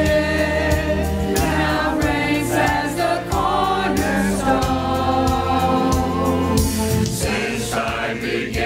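Church choir of men and women singing a hymn, with instrumental accompaniment underneath.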